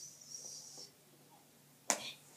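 A soft high hiss during the first second, then a single sharp tap or click near the end.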